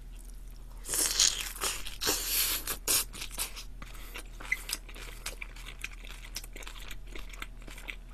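Close-miked crunchy chewing of deep-fried Korean twigim wrapped in kimchi, loudest in the first few seconds, then softer chews and mouth clicks.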